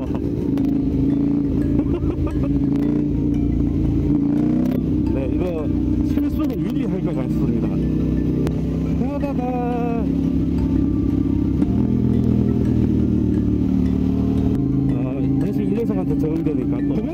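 KTM 890 Duke's parallel-twin engine running at a steady cruise, heard from the rider's position.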